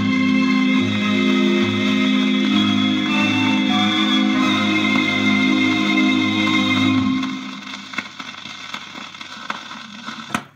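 Doo-wop on a 78 rpm shellac record playing on a portable record player. The song's last chord is held, then dies away about seven seconds in, leaving the disc's surface hiss with a few crackles.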